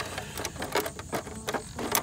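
Irregular clicks, taps and rattles of a 3D-printed plastic RC plane fuselage and its broken-off tail being handled and turned over.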